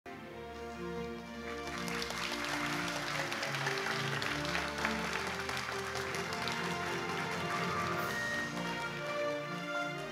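Stage music over an audience applauding; the clapping swells about a second and a half in and dies away near the end, leaving the music.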